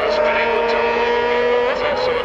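Distant racing motorcycle engines held at high revs, several overlapping steady notes drifting slightly down in pitch, one of them fading out near the end.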